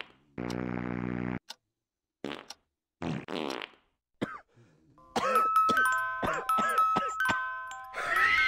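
Electronic film-soundtrack effects and music. A low buzzing synth tone lasts about a second, followed by a few short whooshing sweeps. From about five seconds in comes a run of chiming synth notes laced with curving, echoing sweeps.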